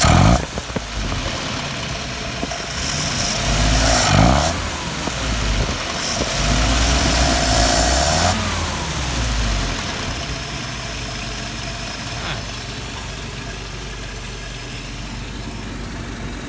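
Jeep CJ5 engine revved by hand at the carburetor throttle linkage: quick rises in engine speed at the start, about 4 s in and about 7 s in, each dropping back, then a steady idle for the second half.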